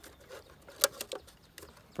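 A few light clicks and taps from a tape measure and marker being handled against a wooden hive box, the sharpest a little under a second in.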